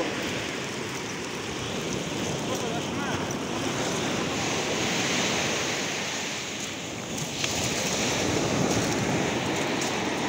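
Sea surf washing onto a sandy beach, a steady rushing noise that swells and eases.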